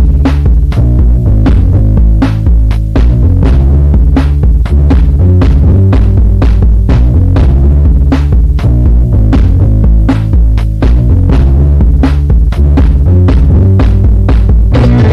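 Electronic instrumental from a Roland Boss DR-5 drum and tone machine, dubbed to cassette tape: a loud, heavy bass line carries under a quick, even beat of drum-machine hits.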